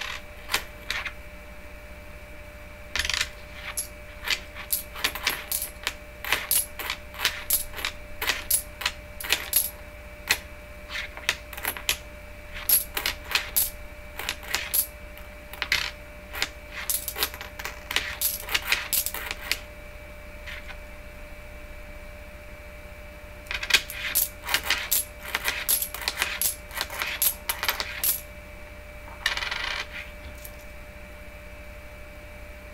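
Quarters clinking against one another and tapping on a wooden table as they are slid off a stack one at a time, in runs of quick metallic clicks with a pause of a few seconds about two-thirds of the way through.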